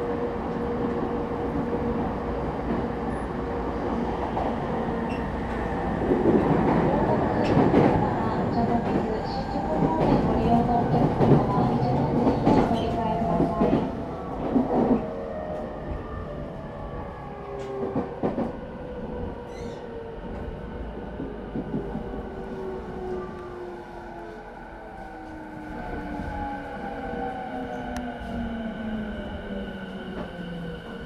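Interior running sound of a JR E217-series motor car with a Mitsubishi IGBT VVVF inverter. For the first half the wheels clatter and click over rail joints and points. From about halfway, several motor and inverter tones slide steadily down in pitch as the train slows, braking for the station stop.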